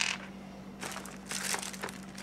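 Clear plastic bag crinkling in a few short, irregular rustles as it is picked up and handled.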